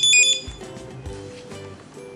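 Opticon OPR-2001 handheld barcode scanner giving a high electronic beep that cuts off about half a second in, the last of a quick run of read beeps as it scans the configuration barcodes from top to bottom. Quieter background music follows.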